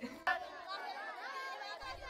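Background chatter of many children's voices at once, high-pitched and overlapping.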